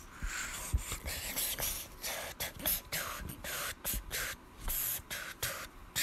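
A person making breathy, hissing mouth sounds in short bursts, like whispered beatboxing, about three a second.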